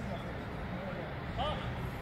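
Faint, distant voices of a few people calling briefly, over a steady low rumble.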